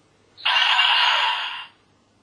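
A DX Forceriser toy belt's small speaker plays a harsh, hissy electronic sound effect for just over a second, starting about half a second in and cutting off suddenly.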